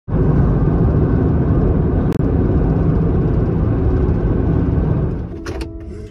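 Steady road and engine rumble inside the cab of a Nissan cargo van at highway speed, fading out near the end with a few short clicks.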